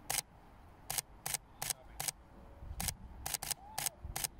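Sony a7 III camera shutter firing about nine separate shots at an uneven pace, some in quick pairs, each a short sharp click.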